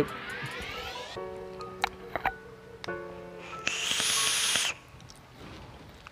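A draw on a rebuildable vape atomizer with its airflow open: about a second of loud airflow hiss and coil sizzle past the middle, after a few light clicks. Background music with held notes runs underneath.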